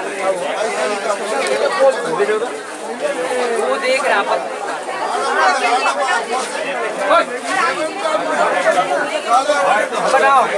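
Several people talking at once, a steady chatter of voices with no other clear sound standing out.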